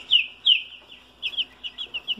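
Young chicks peeping in a cardboard brooder box: a string of short, high calls that each slide down in pitch, the loudest two in the first half second, then quicker, softer peeps.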